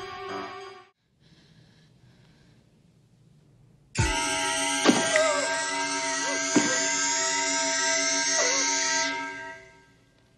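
Horror-film music fades out in the first second, and after a near-quiet gap a loud music stinger bursts in suddenly about four seconds in, with a woman screaming over it. It holds for about five seconds, with two sharp hits along the way, then fades out near the end.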